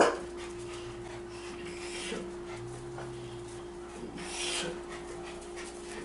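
A poodle-type dog's soft breaths, with faint huffs about two seconds and four seconds in, over a steady low hum. A single sharp click sounds right at the start.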